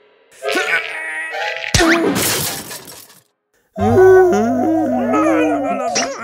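Cartoon sound effects: a few short tones, then a sudden crash-like noisy burst a little under two seconds in. After a brief silence, a loud wavering, warbling sound with a low hum under it.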